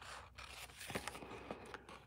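Small scissors trimming patterned paper along the edge of a paper envelope flap: faint cutting and scraping with a few light ticks.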